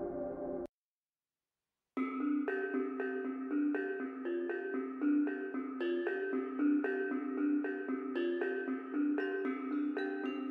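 Background music: a sustained ambient track cuts off under a second in, followed by just over a second of silence. A new track then starts with a run of short notes in an even rhythm.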